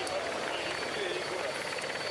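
Steady rotor and engine noise of a television camera helicopter, with faint voices underneath.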